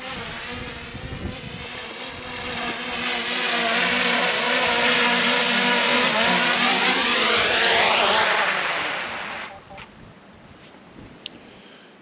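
Small quadcopter drone's propellers whining as it comes down to land close by, getting louder and shifting in tone as it nears the ground, then the motors cut off suddenly about nine and a half seconds in.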